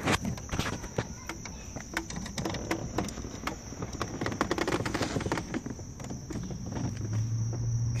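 Irregular clicks and rustling of loose wiring being handled and fed down past a car's kick panel, over a steady high thin whine. A steady low hum comes in near the end.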